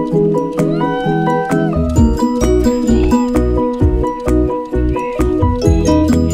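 Background music with a steady beat and sustained notes. Near the start a sliding high note rises and is held for about a second, and a heavy bass line comes in about two seconds in.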